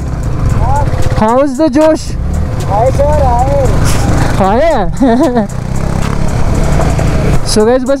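Yamaha R15 V3 single-cylinder engine running at low speed in second gear over a rocky trail, a steady low rumble with wind on the helmet mic. A voice breaks in four times with short wavering phrases without clear words.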